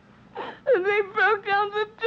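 A girl sobbing in fright after a nightmare: a sharp gasping breath in about half a second in, then high, wavering whimpering cries that break every fraction of a second.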